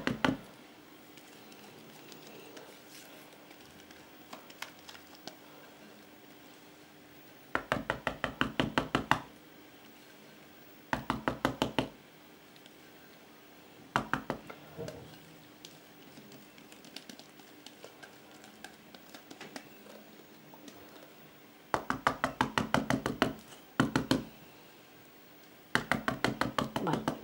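Wire whisk beating a batch of magdalena batter in a plastic tub. The wires tap rapidly against the tub's sides in several short bursts of about seven clicks a second, with quieter pauses between them.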